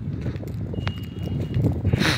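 Goods train of flat wagons loaded with lorries rolling past close by, its steel wheels clattering over the rail joints in a rapid, uneven knocking. A brief high-pitched squeal rings out about a second in.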